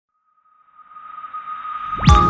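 Intro sound effect: a steady high tone with a hiss beneath it, swelling up out of silence from about half a second in and growing louder, building into the opening music.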